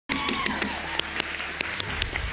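Courtroom audience applauding, with individual sharp claps standing out from the clapping.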